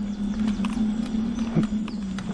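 Homemade electric mobility scooter riding along a leaf-covered woodland track: a steady low motor hum, with its tyres crackling over leaves and twigs. Faint birdsong is heard too.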